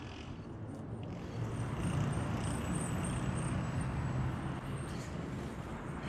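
Busy city road traffic, a steady wash of passing cars, with the low rumble of a heavier vehicle swelling through the middle and easing off near the end.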